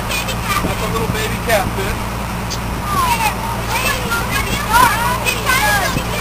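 Steady low hum of the boat's engine running, with children's high-pitched chatter over it, busiest from about halfway through.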